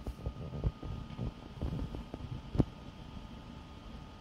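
Low, uneven rumble and small knocks of a hand-held phone being moved, with one sharp click about two and a half seconds in and a faint steady high whine underneath.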